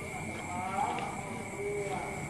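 Faint voices talking in the background, with a steady thin high-pitched tone underneath.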